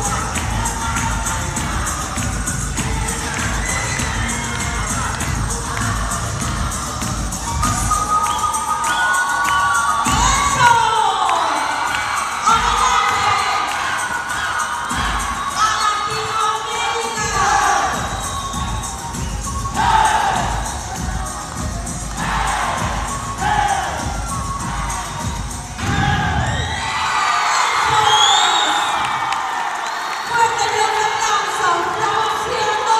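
A crowd of teenage students shouting and cheering, with high shouts and whoops breaking out again and again over the din.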